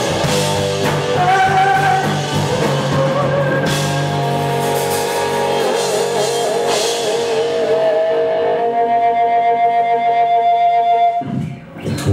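Live rock band playing: guitars, drum kit and singing. The song closes on a held chord that stops abruptly about eleven seconds in.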